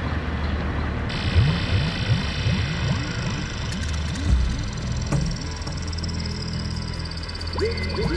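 Ambient dub electronic music: a steady synthesizer bass drone under a hissing filtered-noise wash, with runs of short swooping synth blips that bubble and croak, several a second.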